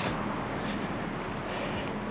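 Steady background noise of city street traffic.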